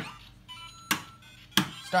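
Lego Mario interactive figure's electronic sound effects: short beeping tones from its small speaker, with sharp plastic clicks as the figure is set down on the bricks, about a second in and again near the end.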